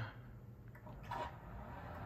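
Faint, steady low hum of an Astomi battery-powered motorized roller shade's motor as the shade starts to lower.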